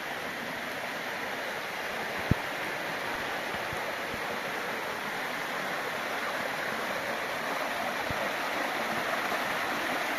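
Steady rushing of a stream, slowly getting a little louder, with one sharp click about two seconds in and a few fainter knocks later.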